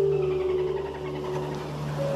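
Soft ambient music with steady sustained notes, over which dolphins call: a rapid buzzing run of clicks that falls in pitch over about the first second and a half.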